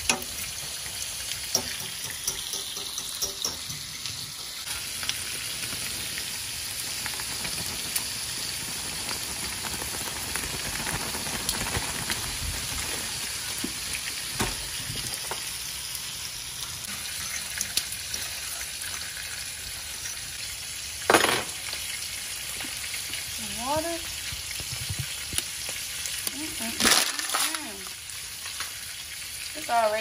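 Chopped onion, bell pepper and garlic, then corn kernels, sizzling steadily in butter and oil in a stainless steel skillet, stirred with a fork that clicks and scrapes against the pan. Two louder knocks, one about two-thirds through and one near the end.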